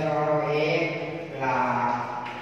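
A man's voice speaking in a drawn-out, sing-song way, holding long vowels on a fairly steady pitch, with a shift to a new vowel about one and a half seconds in.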